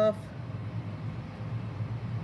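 Steady low background hum, like room ventilation or a machine. No separate sound from the clay work stands out above it.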